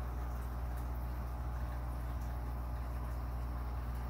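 Steady low hum with a faint even hiss over it, unchanging throughout.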